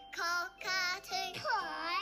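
A cartoon child character's voice singing "cockatoo, cockatoo" in short high notes, the last note longer and sliding in pitch.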